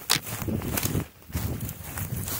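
Footsteps through deep dry fallen leaves, the leaf litter crunching and rustling with each step, with a short lull a little past a second in.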